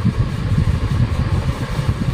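A steady low mechanical rumble, like an engine running, with no clear changes.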